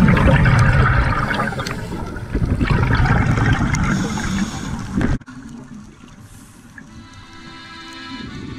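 Underwater rush of scuba exhaust bubbles from a diver's regulator, coming in swells, mixed with the tail of a song. It cuts off suddenly about five seconds in, leaving quiet music.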